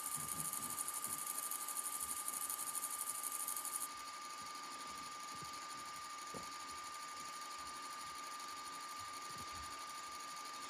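Toshiba VCR running with its tape winding backwards: a steady high whine over a low hiss, with a brighter hiss on top that stops about four seconds in.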